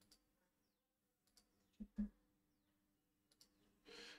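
Near silence broken by two short clicks about two seconds in, a fifth of a second apart, the second louder: computer mouse clicks.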